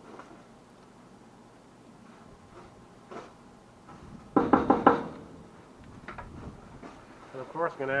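A spoon stirring chili in a Dutch oven, with a few faint knocks and scrapes against the pot. About four seconds in comes a brief, loud vocal sound lasting under a second.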